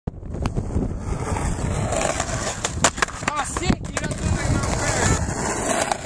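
Skateboard wheels rolling on concrete, a steady rumble, broken by several sharp clacks of the board. Short shouts from people nearby come around the middle.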